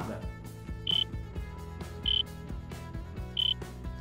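Soft background music with a steady beat, over which a short, high electronic beep sounds three times, about a second and a quarter apart, marking the seconds of an on-screen count.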